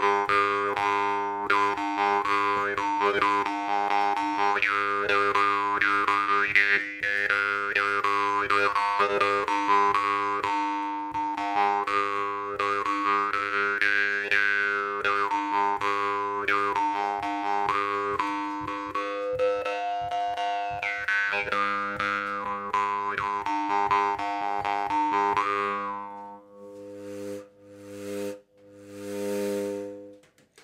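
Metal jaw harp played with rapid rhythmic plucks over a steady low drone, the mouth shaping an overtone melody that rises and falls. Near the end the playing thins out to a few separate plucks.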